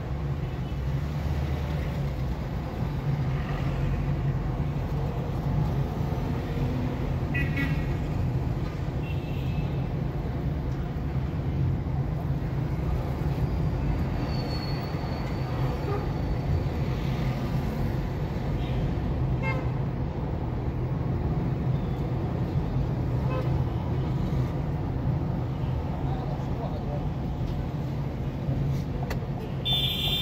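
Steady drone of a car's engine and road noise heard from inside the cabin while driving in city traffic, with a few brief car horn toots from surrounding traffic.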